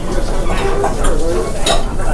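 Thick ramen noodles being lifted and stirred with chopsticks in a bowl of soup, a wet stirring sound, with a brief sharp sound near the end.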